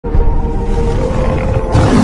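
A big cat's roar, a tiger roar sound effect, over intro music with steady held tones. The roar swells louder near the end.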